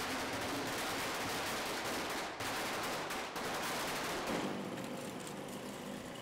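A string of firecrackers going off in a rapid, continuous crackle of small bangs, thinning out and getting quieter for the last second or so.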